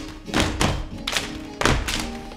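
A short instrumental break in a stage song: about five sharp, uneven percussive thumps and hits in two seconds over a faint low held note, with no singing.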